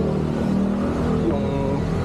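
A motor vehicle engine running nearby with a steady low hum, under street noise.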